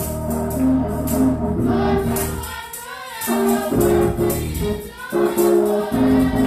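Gospel praise team singing with steady organ chords and hand clapping keeping the beat. The music thins out briefly twice, about halfway through and near the end.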